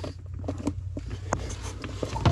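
Handling noise under a car's dashboard: scattered light clicks and rustles as hands reach among the wiring harness and plastic trim under the steering column, over a low steady hum.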